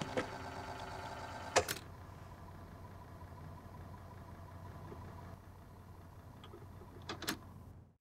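Faint steady hum with a few soft steady tones and scattered clicks. It drops lower about five seconds in and cuts to silence at the very end.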